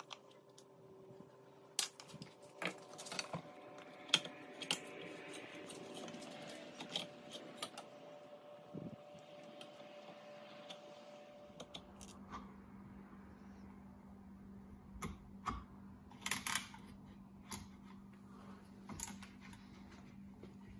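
Scattered small clicks and taps of a plastic recoil-starter pulley and its steel coil spring being handled and fitted by hand. A steady low hum comes in about halfway through.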